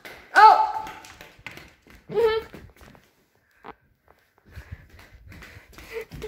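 Three short, high-pitched wordless vocal calls in the first half, each sliding up in pitch, the third wavering; then scattered light taps and soft thuds near the end.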